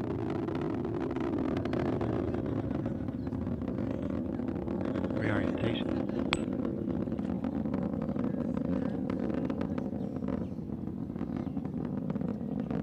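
Steady low rocket-motor rumble from the Orion test capsule's launch abort system firing, heard from the ground, with a few sharp clicks over it.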